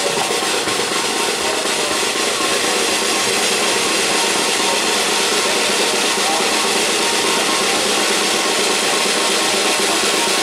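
Military side drum played in a continuous, unbroken roll.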